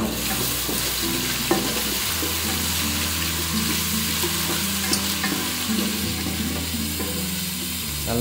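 Ginger-garlic paste, shallots and green chillies sizzling steadily in hot oil in an aluminium pot while a wooden spatula stirs them, with a couple of light knocks about a second and a half in and again near five seconds.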